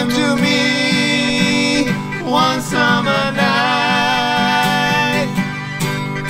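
Acoustic guitar strummed in a steady rhythm while two men sing a duet together, holding long notes with a break between phrases about two seconds in.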